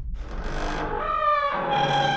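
Intro jingle sound design: a low rumble carries on underneath while music notes fade in, gliding slightly at first, then settling into long held tones near the end.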